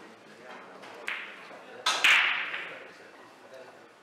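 Pool balls clacking together: a lighter click about a second in, then two loud, sharp clacks in quick succession about two seconds in, ringing briefly in the large hall. The balls on the near table do not move, so the clacks come from play on another table.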